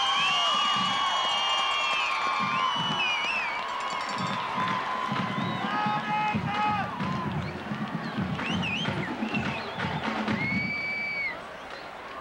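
Stadium crowd cheering and whooping, with many overlapping high calls that rise, hold and fall, over irregular low thuds. It fades just before the end.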